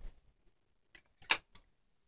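A few light clicks and knocks of a wooden supported spindle being handled and set into its base, the sharpest about a second and a quarter in.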